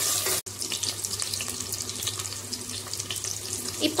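Sliced onions and green chillies sizzling in hot oil, a steady crackling hiss, broken once by a brief dropout about half a second in.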